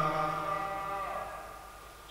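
A man's long, intoned 'alhamdulillah' trailing off. Its held note fades through the hall's reverberation over about the first second, then dies away to a low murmur.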